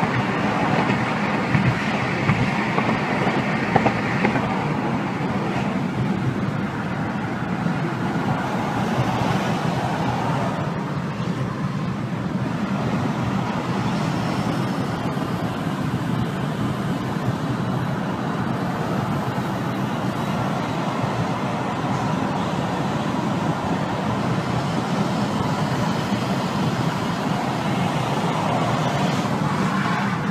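Steady road noise inside a moving car's cabin: tyres on the road and the engine running, with no break.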